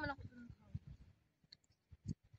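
A brief vocal sound at the very start, followed by faint, irregular clicks and soft low knocks.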